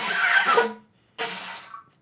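A hand-held horn blown by mouth in two short, breathy blasts with only a weak note sounding through, the second shorter and fading out: an attempt to get the horn to sound.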